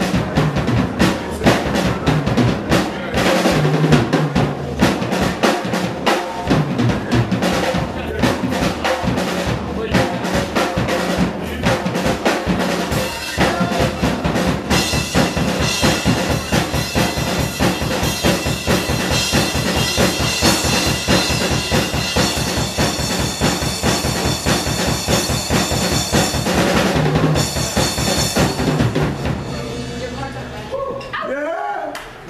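Drum kit played live as a solo: busy strokes on drums and bass drum, turning about halfway into a fast, even roll under ringing cymbals, which dies away near the end.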